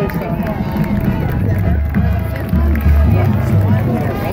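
Marching band playing, its low brass holding long notes that change every second or so, heard from the stands with spectators talking close by.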